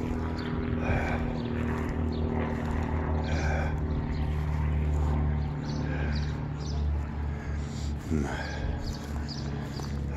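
String trimmer (weed whacker) running steadily, a low even hum.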